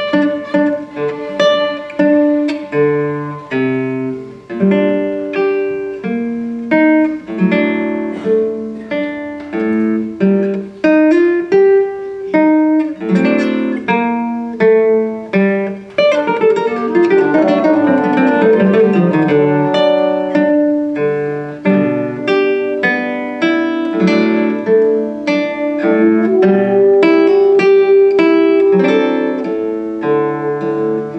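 Nylon-string classical guitar playing plucked single notes and chords. About halfway through it breaks into a fast run of falling notes that leads into a fuller, continuous passage.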